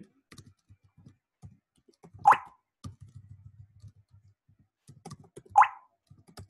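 Computer keyboard typing: many light key clicks, with two much louder, sharper knocks about two and a quarter seconds and five and a half seconds in.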